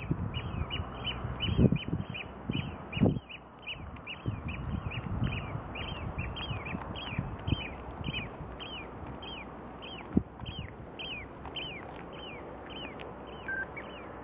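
A bird calling in a long, quick series of short, down-slurred high notes, about three a second, spacing out toward the end. Wind gusts buffet the microphone during the first few seconds, then settle.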